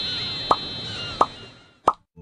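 Three short, rising cartoon 'pop' sound effects about two-thirds of a second apart, over a high chime that rings and fades, with faint bird calls behind; the sound drops out abruptly at the end.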